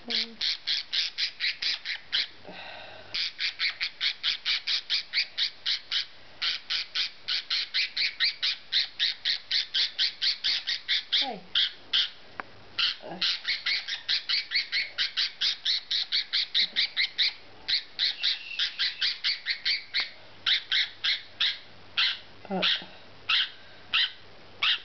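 Cockatiel squawking harshly and over and over, about four calls a second with only brief pauses, while held wrapped in a towel for wing clipping.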